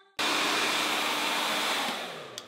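GHD Air hair dryer blowing steadily: an even rushing hiss with a faint motor hum. It cuts in suddenly just after the start and eases off near the end.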